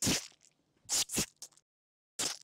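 Short splat sound effects for a paint-splatter animation: one at the start, two in quick succession about a second in, then a couple of faint ticks.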